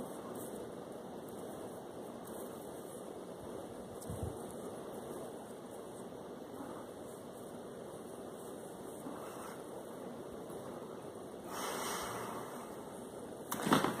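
Steady background hiss, with a soft thump about four seconds in and a brief louder rustle near the end.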